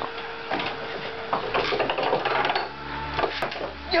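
A row of red dominoes in a homemade lever-and-domino chain-reaction machine toppling one after another, a fast run of clicks and clacks lasting a couple of seconds. Near the end a knock and clatter as a cup at the end of the chain tips over into a bowl.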